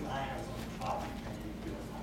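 A man's voice lecturing over a room microphone, in short phrases with brief pauses.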